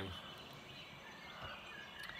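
Faint steady background hiss in a pause between speech, with no distinct sound event.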